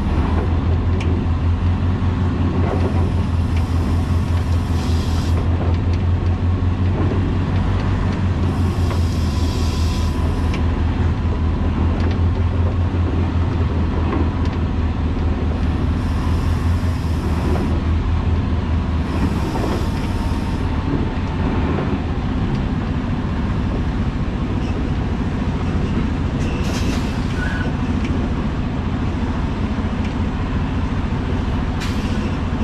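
A semi-truck's diesel engine running with a deep, pulsing rumble as the rig creeps along pulling an empty flatbed trailer; the rumble eases about two-thirds of the way through. Several short hisses come and go over it, about five in all.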